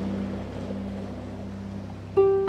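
Sea waves washing in a steady hiss, with the low notes of a harp dying away beneath them.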